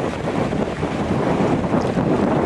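Wind buffeting the microphone: a steady rushing noise with a heavy low rumble and no distinct knocks or flaps.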